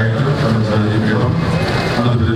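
A dense crowd talking, many voices overlapping into a loud continuous din.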